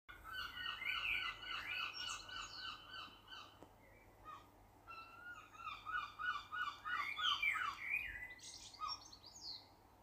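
Birds singing: two phrases of quick repeated chirping notes, the second starting about five seconds in and stopping shortly before the end.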